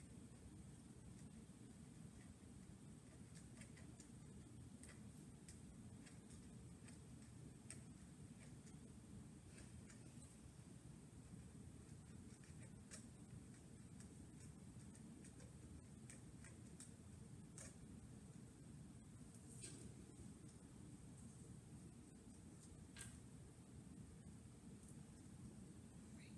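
Near silence: a steady low room hum with faint, irregular light ticks and scratches of a pencil writing on paper.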